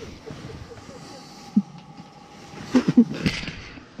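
Short bursts of laughter and voice sounds around three seconds in, over a low steady hiss.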